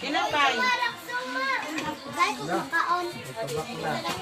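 A group of children's voices talking and calling out over one another, high-pitched and overlapping.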